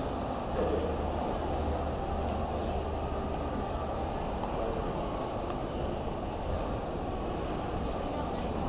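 Steady background noise of a large indoor shopping mall: a constant low hum under a faint wash of distant, indistinct voices.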